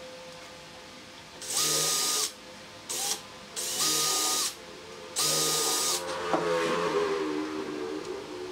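Cordless drill drilling small pilot holes into wood through a steel hinge, in three short bursts of steady motor whine that start and stop sharply. After the third burst comes a rougher, wavering sound.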